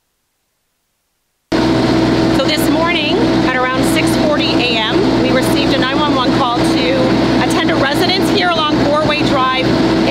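Silence for about the first second and a half, then a woman speaking over a steady low hum from an idling vehicle engine.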